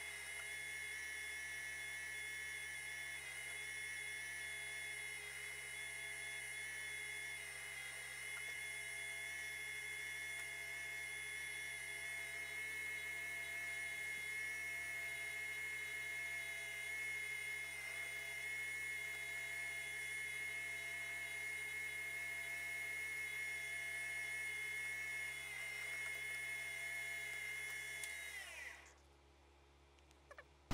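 Industrial sewing machine's electric motor running with a steady high whine, then switched off near the end, its pitch falling as it winds down.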